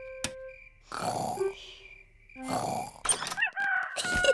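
Cartoon piglets snoring in their sleep: two breathy snores, each about half a second long, about a second and a half apart.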